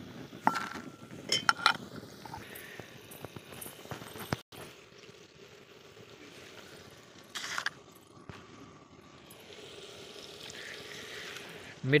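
Steel kitchenware clinking: a few sharp metal-on-metal clinks with a short ring in the first two seconds, as bowls and a ladle knock together around the cooking pot. A low steady background runs underneath, and there is one short noise about seven seconds in.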